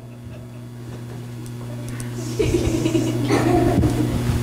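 A steady low hum throughout, joined in the second half by a louder stretch of indistinct vocal sound.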